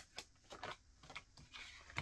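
Tarot cards being shuffled by hand and laid onto a wooden table: faint, soft flicks and taps of the cards, several in a row with a brief rustle near the end.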